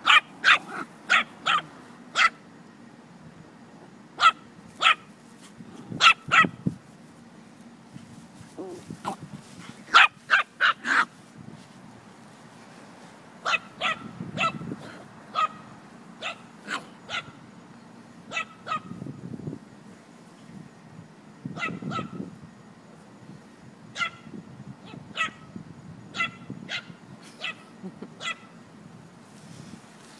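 Small dog barking during play: quick high-pitched yaps in clusters of three to six, with short pauses between the clusters.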